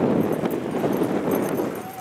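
Hoofbeats of a gaited saddle horse being ridden past at a quick, even gait on a dirt and grass track, with people talking in the background.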